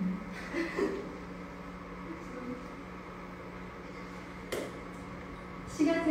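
A lull in the talk: a low steady hum with faint murmuring near the start, and one short knock about four and a half seconds in.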